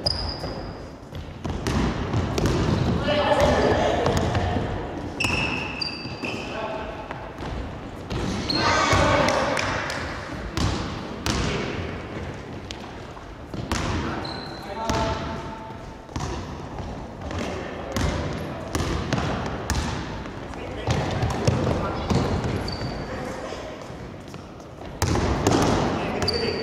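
Basketball play on a wooden gym floor: the ball bouncing and thudding, sneakers squeaking in short high squeals, and players' voices calling out across a large echoing hall.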